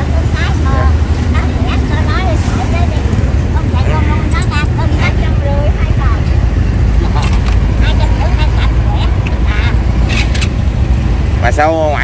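Steady low rumble of road traffic passing close by, with faint, indistinct talk from people nearby.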